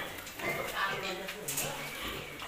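Pigs in their pens giving short squeals and grunts, with people's voices in the background.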